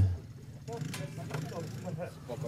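Yamaha Raptor sport quad's single-cylinder engine idling steadily, heard close to its exhaust muffler, with faint voices over it.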